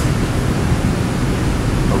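Steady background room noise: an even hiss with a low rumble underneath.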